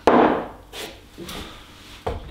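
A glass jar set down on a wooden table with a knock, followed by softer handling noises.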